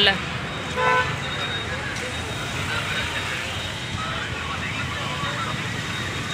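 Road traffic with a steady rumble, and a short single car-horn beep about a second in.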